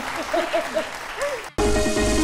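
Studio audience applauding, with a few voices mixed in. About one and a half seconds in it cuts off sharply and a loud music sting with held notes and a deep bass swoop begins: a TV show's logo jingle.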